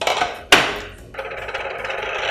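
Tableware knocking on a tray-covered table: a click at the start and a louder, sharper clack about half a second in, then about a second of steady rustling as the diners handle their napkins and food.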